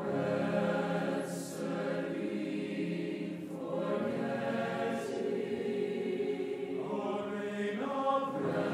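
Mixed concert choir singing sustained, slowly moving chords, with soft 's' consonants at a few phrase points.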